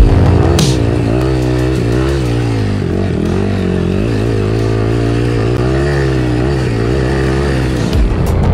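Trail dirt bike engine running on a rough, steep track, its note rising and falling as the throttle changes. Electronic music plays underneath.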